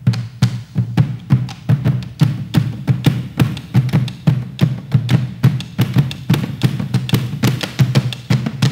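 Several bombo legüeros, Argentine rope-tensioned hide bass drums, played together with sticks in a quick, steady folk rhythm. Deep hits on the drumheads mix with sharp clicks of sticks on the wooden rims.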